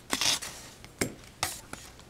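Two short rustles with a sharp click between them: handling noise from the foil-wrapped sponge cake being moved.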